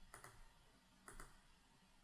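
A few faint computer mouse clicks, one near the start and one about a second in, otherwise near silence.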